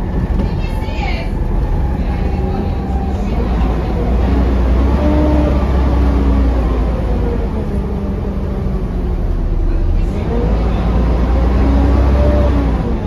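Volvo B7TL double-decker bus's six-cylinder diesel and drivetrain heard from the upper deck: a steady low rumble with a whine that falls and rises in pitch several times as the bus slows and pulls away, climbing again near the end.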